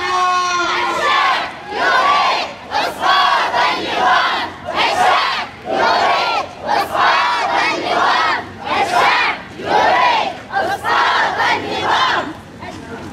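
Crowd of protest marchers chanting slogans together, in rhythmic phrases of about a second each with short breaks between.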